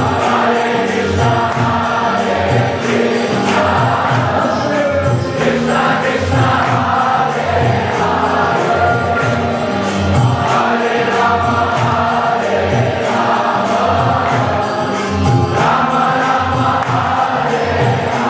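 Kirtan: a large crowd singing a devotional chant together over a steady beat of hand cymbals and drum.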